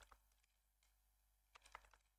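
Faint computer keyboard typing: a brief click at the start, then a quick run of keystrokes in the last half second, with near silence between.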